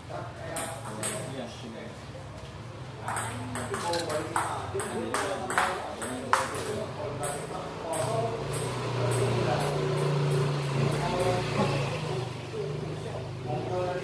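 Table tennis rally: a celluloid/plastic ping-pong ball clicking back and forth off paddles and the table, a quick run of sharp ticks through the first half that stops around the middle, with voices in the hall.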